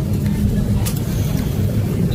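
Shopping cart rolling across a store floor: a steady low rumble with scattered rattling clicks.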